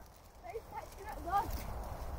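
Faint, high-pitched child's voice calling briefly, about half a second to a second and a half in, over a steady low rumble of wind on the microphone.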